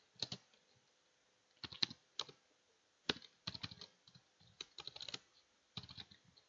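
Quiet computer keyboard keystrokes, in small irregular groups of a few clicks with short pauses between, as a word is typed out.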